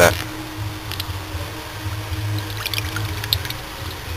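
Coolant and trapped air spitting and trickling from a loosened bleed screw on a BMW M30 straight-six's thermostat housing, with a few faint clicks, over a steady low hum. It is the sound of air trapped in the cooling system being bled out.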